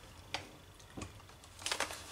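A few light knocks and clicks from a laptop's plastic case as it is handled and turned over on a desk: one about a third of a second in, another about a second in, and a short cluster near the end.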